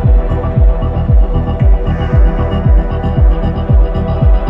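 Psychill/chillgressive electronic music: a deep kick drum thumps about twice a second, each hit dropping in pitch, under sustained synth pad chords.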